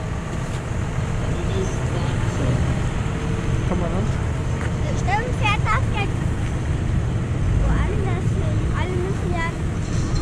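Tractor diesel engines running as tractors drive slowly past close by: a steady low rumble that grows louder over the first few seconds. Voices rise above it briefly about five seconds in and again near the end.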